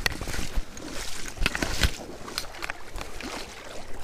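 Water sloshing and splashing with scattered knocks and clatters, from someone moving through shallow flooded marsh water.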